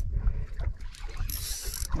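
Daiwa Saltiga conventional jigging reel being cranked hard, winding line in on a hooked fish, with the gears whirring and ticking over a low rumble.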